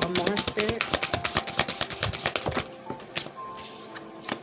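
A deck of tarot cards being shuffled by hand: a rapid run of crisp card clicks for about the first two and a half seconds, then it stops.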